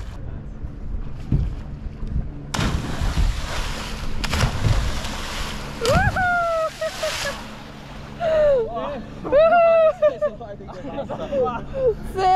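A person plunging into river water from a height: a splash of water in the first half, followed by whoops and laughter, with wind rumbling on the microphone.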